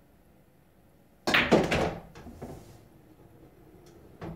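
A pool shot: the cue strikes the cue ball about a second in, followed at once by a quick run of sharp clacks as balls collide and hit the rails. A few lighter knocks follow over the next two seconds as the balls roll on.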